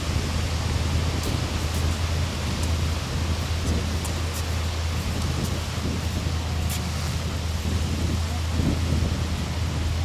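Wind buffeting the camcorder microphone at the lakeshore: a steady low rumble with a hiss over it.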